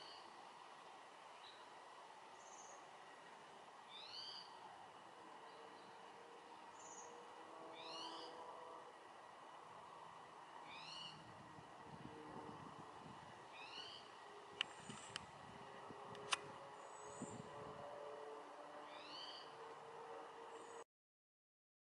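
Faint songbird singing a short phrase of a few quick high notes, repeated about every three to four seconds over quiet background. A few faint sharp clicks come in the middle.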